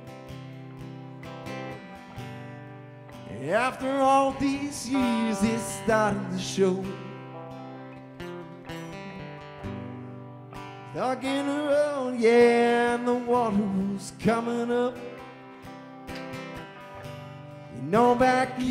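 Live band instrumental break: an electric lead guitar plays phrases full of sharply rising bends and slides over strummed acoustic guitar and a sustained low end, with quieter stretches between the lead phrases.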